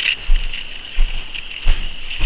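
Footsteps: three dull thuds about two-thirds of a second apart, over a steady high-pitched hiss.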